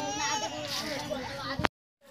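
A young child crying amid other voices, cut off abruptly about one and a half seconds in.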